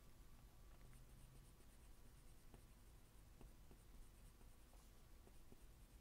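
Faint scratching of a graphite pencil on paper: many small, light strokes sketching fine hairs.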